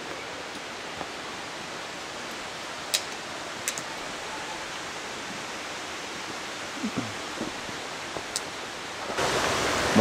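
Steady rush of a mountain creek flowing over rocks, with a few faint clicks over it. The rush grows louder about a second before the end.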